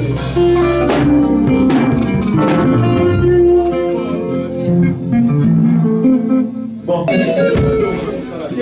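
Live band playing without vocals: electric bass, electric guitars and a drum kit. The drumming thins out about halfway through and comes back in with a burst of hits about a second before the end.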